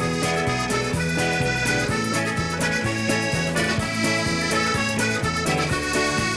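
Live traditional dance tune led by a button accordion, with the band behind it keeping a steady, even beat.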